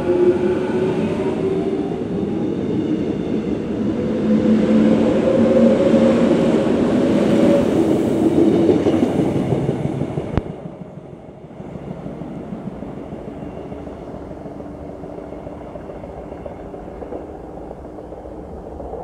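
Korail Class 361000 electric multiple unit pulling away from the platform: its traction motors whine in a stack of tones rising steadily in pitch as it accelerates, over the rumble of wheels on rail. About ten seconds in the sound drops off sharply, leaving a fainter rumble as the train runs off into the distance.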